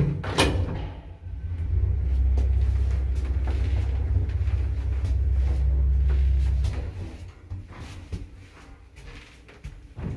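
1977 ZREMB passenger lift running: a sharp click about half a second in, then a steady low hum of the cabin travelling that dies away about seven seconds in as the lift stops. Lighter knocks and rattles follow.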